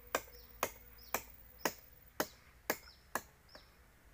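Chopping blows into the bark of an agarwood (gaharu) tree trunk, the kind of cutting used to wound the tree so that it forms resin. Seven sharp, even strikes come about two a second and stop shortly before the end.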